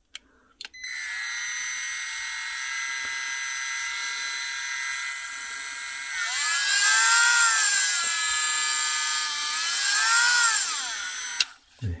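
Milwaukee M12 C12RT cordless rotary tool switched on at its low speed setting and running free with a steady high whine. About halfway it gets louder and its pitch rises and wavers up and down, then it switches off shortly before the end.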